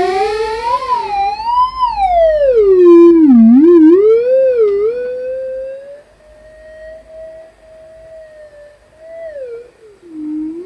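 Homemade theremin-style synthesizer, an Axoloti board played through Sharp infrared distance sensors, sounding a single electronic tone that slides up and down in pitch as hands move over the sensors. For about five seconds it is loud and wobbling. It then turns much quieter and thinner, holding a near-steady pitch, and slides down near the end.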